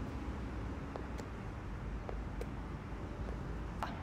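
Steady low outdoor background rumble with three faint, light taps, the last near the end the clearest.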